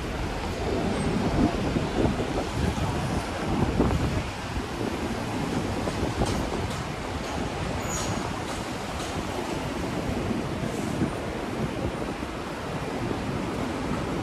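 City street ambience: steady traffic noise from cars and taxis on the street, with some wind on the microphone.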